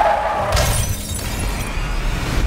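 Car window glass shattering suddenly about half a second in, with high tinkling fragments dying away over the next second.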